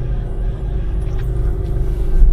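Steady low rumble of a car's engine and tyres on a concrete road, heard from inside the cabin.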